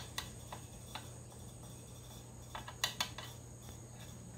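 Light metallic clicks of a screwdriver turning a small fill screw out of the fan housing of a 1950 Farmall Cub: a few scattered ticks, then a quick run of clicks between two and a half and three seconds in.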